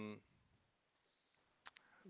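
Near silence: quiet room tone of a video call, with the tail of a spoken "um" fading at the start and two or three brief faint clicks near the end.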